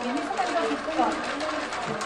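Indistinct voices of people talking in the background, with no clear words.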